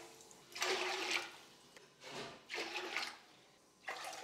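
Cupfuls of water poured into a stainless steel pot, splashing against the metal bottom in three short pours with pauses between them.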